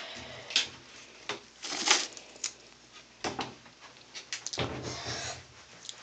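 Handling noise: scattered light taps, clicks and rustles as things are moved around on a bathroom counter, with a longer rustle near the end.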